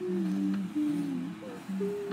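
A child humming a short tune with closed lips: a string of held notes that step down and back up, ending on a higher note.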